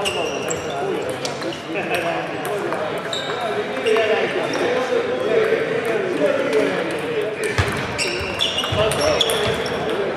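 Table tennis ball clicking off bats and the table in quick, irregular hits during a rally, over a steady babble of voices in a large echoing hall.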